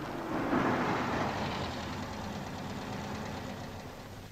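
A car's engine running, swelling about half a second in and then slowly fading.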